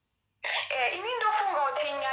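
Dead silence, then about half a second in a woman's voice starts and carries on, drawn out with a wavering, gliding pitch.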